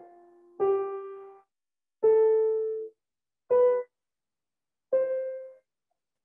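Grand piano playing single notes slowly, one at a time, about a second and a half apart and stepping upward in pitch, as in a slow thumb-under scale exercise. Each note dies away and is cut off short, leaving silence before the next, the third note briefer than the rest.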